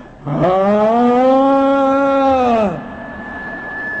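A man's voice holding one long vocal note for about two and a half seconds, its pitch arching slightly and dropping as it ends. It is a vocal imitation of a surge of energy coming back up in a hall.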